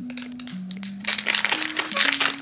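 A crinkly foil blind-bag packet rustling as it is cut open with a nail clipper, the crinkling louder in the second half. Background music with a low stepping bass line runs underneath.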